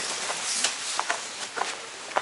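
Rustling movement noise with a few faint short knocks, as someone shifts about among backpacks and steps on gravel.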